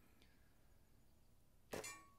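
A single shot from a Diana 54 Airking Pro side-lever spring-piston air rifle about 1.7 seconds in: a short sharp report with a metallic ring. The rest is near silence.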